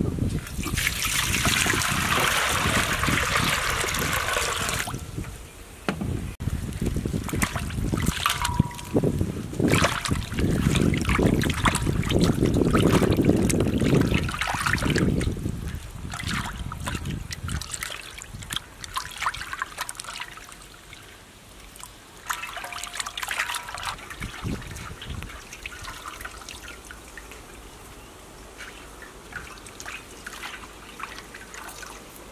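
Water sloshing, splashing and dripping in a metal wok as hands wash raw meat pieces in it, with a louder rush of water in the first few seconds.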